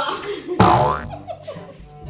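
A sudden comedic sound effect with a sliding, wobbling pitch about half a second in, the loudest moment, over background music.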